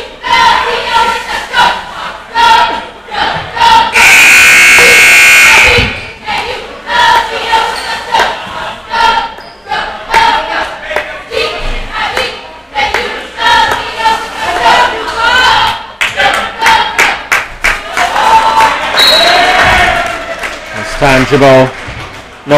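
Gym scoreboard horn sounding once for about two seconds, ending a timeout, over voices and shouts from the crowd and benches.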